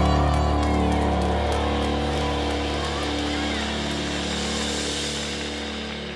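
A live worship band's final chord held and slowly dying away: sustained bass and keyboard notes under a cymbal wash, ending the song.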